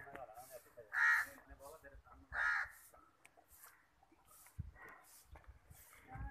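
A crow cawing twice, the calls about a second and a half apart and louder than anything else around them.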